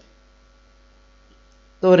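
Faint steady electrical hum in a pause between spoken sentences, with a man's voice starting near the end.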